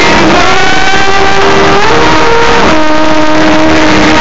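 House music from a festival sound system, recorded very loud from the crowd: a sustained synth lead whose notes slide up in pitch several times, over a dense wash of sound.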